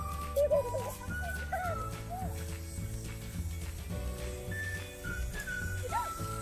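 Background music: held chords over a steady low bass, changing about once a second, with a few short sliding notes above.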